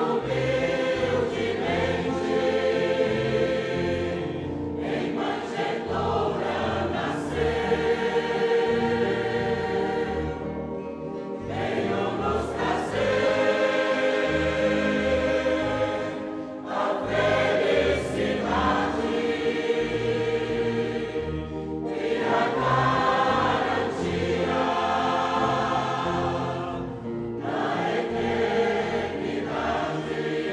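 Choir singing a hymn in long held phrases, with a short break between phrases about every five to six seconds.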